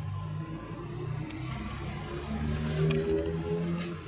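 A motor vehicle's engine running on the road outside, its pitch stepping upward in the second half.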